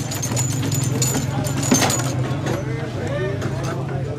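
Foosball table in play: quick clicks and knocks of the ball and plastic players striking the wooden table, mostly in the first two seconds. Voices of onlookers and a steady low hum run underneath.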